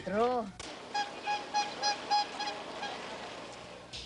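A rapid, evenly spaced series of about seven or eight short honks, roughly three a second, fading away near the end.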